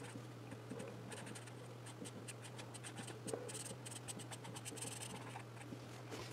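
Felt-tip marker scratching across colouring-book paper in quick, short back-and-forth strokes as a page is coloured in. The sound is faint, with a steady low hum underneath.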